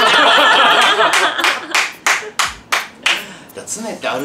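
A group of men and women laughing loudly all at once. Hand claps follow at about three a second while the laughter dies away.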